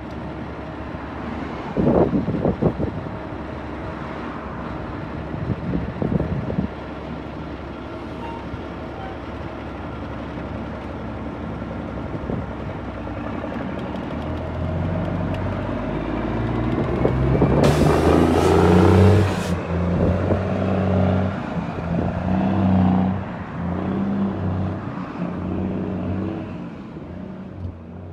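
Heavy diesel semi truck running at the roadside, with a brief hiss a little past the middle. Music with a strong bass line comes in over it during the second half.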